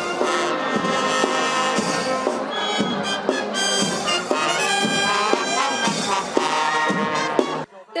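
Military marching band playing a march on brass and reed instruments (trumpets, trombones, saxophones and a sousaphone) with drum strikes; the music stops suddenly near the end.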